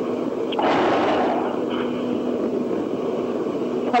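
Line noise on a recorded 911 telephone call: a steady hum under hiss, with a short burst of rushing noise about half a second in.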